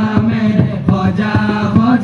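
A group of male voices singing a qawwali together, holding one long low note while ornamented runs move above it, over a quick, even percussive beat.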